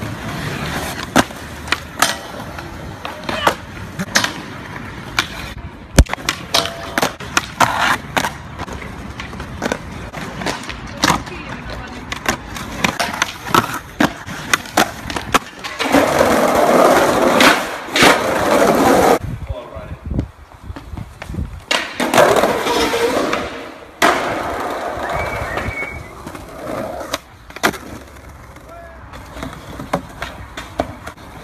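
Skateboard wheels rolling over concrete and paving stones, with sharp pops and clacks as the board is flipped and landed. The trucks grind along a metal rail and a wooden ledge. Loud, rough rolling runs about halfway through and again a little later.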